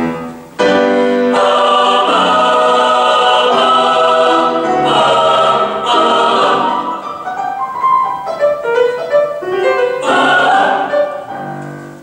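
Mixed choir singing with piano accompaniment: after a brief break about half a second in, full sustained chords, then quieter detached notes from about seven to ten seconds, and a last chord that fades away near the end.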